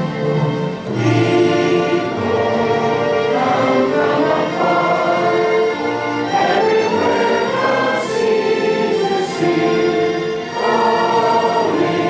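A large congregation singing a hymn together over an orchestral accompaniment, in long held phrases with a short breath between them about every five seconds.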